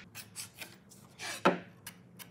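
Light scratching strokes of a pencil marking wood, then a brief sliding swish and a sharp knock about one and a half seconds in as a metal precision square is slid and set down against the board.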